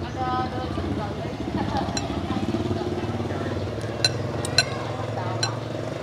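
A metal spoon clinking against a ceramic bowl as noodles are stirred: several sharp clinks, mostly in the second half. Underneath is the steady drone of a motorbike engine running.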